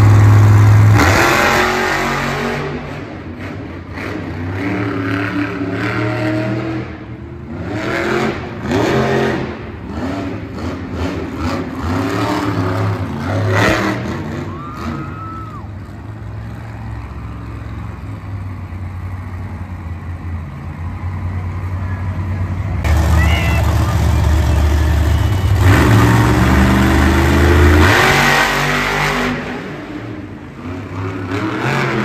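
Monster truck's supercharged V8 revving hard in repeated surges, rising and falling in pitch as the truck drives and jumps the dirt course. It is loudest right at the start and again in a long full-throttle run about three quarters of the way through.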